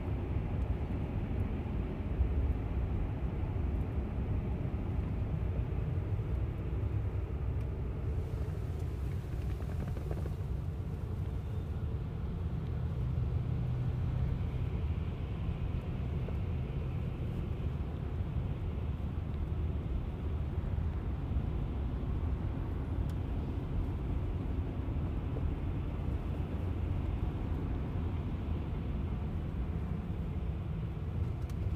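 Steady low road and tyre rumble heard inside a Tesla's cabin as the electric car creeps along at about 13 mph in stop-and-go traffic.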